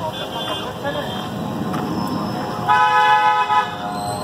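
A vehicle horn sounds one steady honk of about a second, near the end, over street noise and scattered voices.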